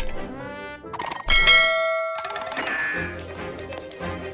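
A sharp metallic ding about a second in, ringing on for about a second before fading, set among orchestral cartoon music.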